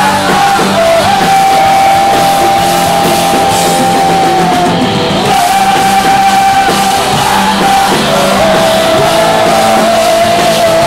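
Punk rock band playing live: electric guitars and drums with a singer holding long sung notes over them, loud and continuous.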